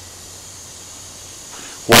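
A faint steady low hum with a light hiss, then a man's voice begins near the end.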